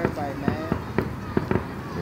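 Fireworks popping: an irregular string of sharp cracks, several a second.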